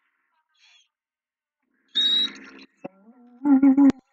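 A man's voice giving short, loud hooting cries after a quiet start: a burst with a high edge about halfway through, then a quick run of about four pulsing hoots near the end, cut off by a sharp click.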